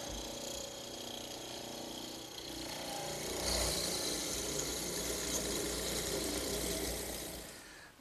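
Benchtop hollow-chisel mortiser running with a steady motor hum. About two and a half seconds in, its half-inch chisel and centre auger bit plunge into a heart pine leg, and the cutting grows louder for about four seconds before dying away near the end.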